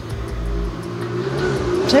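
A motor vehicle engine running close by, a steady low hum that rises slightly in pitch past the middle, with a low rumble in the first part. A woman starts to speak at the very end.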